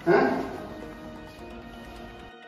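A short loud cry right at the start, fading within half a second, followed by quiet background music with steady held notes.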